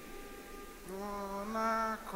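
A single voice singing sustained hymn notes: a long note starts about a second in with a slight upward slide and steps up to a higher note halfway through.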